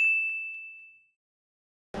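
A single bright ding sound effect: one clear, bell-like tone that rings and fades away within about a second.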